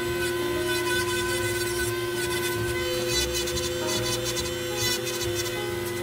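Electric nail drill running at a steady high whine, its small bur grinding along the edge of an ingrown toenail; it stops right at the end. Background jazz music plays underneath.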